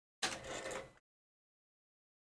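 A brief tabletop handling noise: a small knock followed by a short scrape or rustle, under a second long, from art supplies being moved on the desk.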